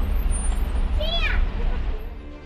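Street traffic noise: a steady low engine rumble from passing or idling vehicles. About a second in there is one brief high-pitched sound that rises and then falls.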